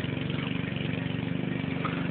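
Riding lawnmower engine running steadily at a constant speed, cutting grass.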